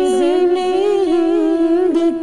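Unaccompanied vocal singing in naat style: one voice holds a long, wordless note that wavers and bends in pitch, part of an Urdu patriotic tarana.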